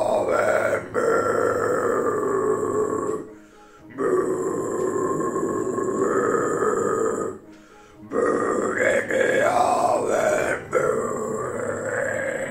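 A man practising death metal growls: four long, low, guttural growls with short pauses for breath between them. These are a beginner's first attempts on his first day, made without any guides.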